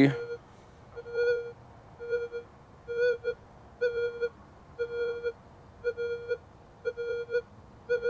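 Minelab Manticore metal detector with its 8-inch M8 coil giving its target tone, a short beep of the same steady pitch about once a second as the coil is swept back and forth over a small gold nugget. The detector shows no ID for it but gives a good audio response.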